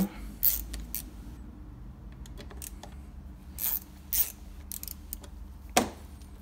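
Light metallic clicks and rattles of steel bolts and a socket tool being handled while the last bolts of a scooter's gearbox cover are unscrewed and picked out, a few scattered clinks with a sharper one near the end.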